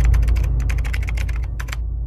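Typing sound effect: a quick run of about fifteen key clicks that stops near the end, over a low rumble fading away.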